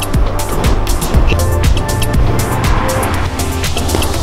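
Background electronic music with a steady beat and heavy bass.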